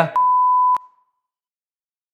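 A single electronic beep: one steady, pure mid-pitched tone about half a second long, starting and stopping with a click.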